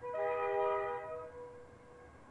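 GE C44ESACi freight locomotive's air horn sounding one short blast of about a second, a chord of several steady tones, with one tone trailing on faintly afterwards.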